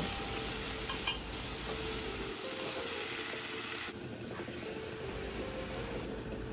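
Diced potatoes and onions sizzling in hot oil in a nonstick pan while being stirred with a silicone spatula, a steady frying hiss with a small click about a second in. The sizzle turns a little quieter about four seconds in.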